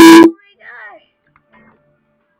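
A person's short, very loud shriek right at the start, loud enough to overload the microphone. About half a second later comes a brief, much quieter voice.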